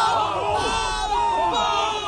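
Many voices shouting together at once: a crowd yelling.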